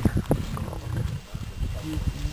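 Lions feeding on a freshly caught nyala carcass: sounds of eating and tearing at the kill, with a few short knocks or crunches near the start and a low rumble underneath.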